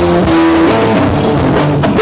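Stoner rock band playing live: electric guitar with a drum kit behind it, loud and continuous.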